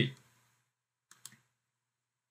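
A computer mouse clicking, a quick pair of sharp clicks about a second in, with near silence around them.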